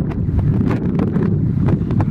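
Wind buffeting the camera's microphone: a steady, loud low rumble, with a scattering of faint clicks over it.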